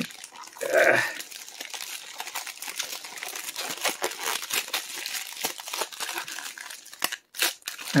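Thin grey plastic poly mailer bag crinkling and crackling steadily as hands pull and work it open, with a brief lull shortly before the end.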